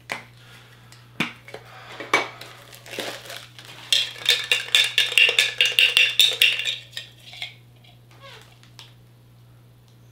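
A tin Funko Soda can being handled: a few separate clicks and knocks, then about three seconds of rapid metallic rattling and clinking as the can is tipped up.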